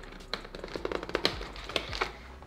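Cardboard packaging and accessories being handled in a motherboard box: light, irregular clicks and taps, in a quick cluster about a second in.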